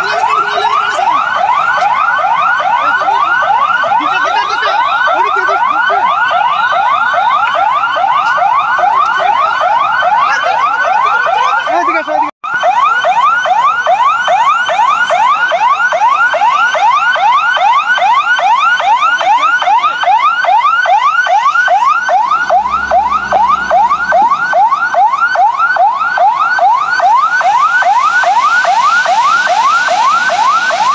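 Electronic siren wailing without pause, a fast rising whoop repeating about three to four times a second, with a momentary break about twelve seconds in.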